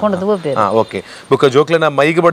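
Conversational speech, a person talking, with a brief pause about a second in.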